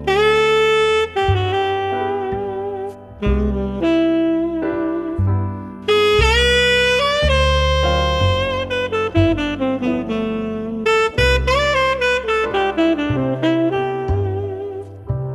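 Instrumental jazz: a saxophone plays a melody of held and stepping notes over bass, including a falling run of notes near the end.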